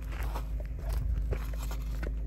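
Footsteps in sneakers on a dry dirt-and-gravel trail strewn with twigs: a few light crunching steps.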